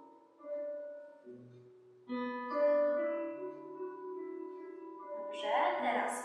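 Piano accompaniment music playing slow, held notes and chords, with a louder chord coming in about two seconds in. A woman's voice begins near the end.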